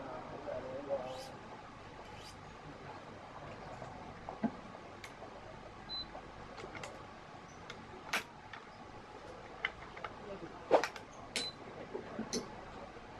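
Scattered sharp clicks and ticks of nylon string and machine parts being handled while a badminton racket is strung, with one louder click near the end.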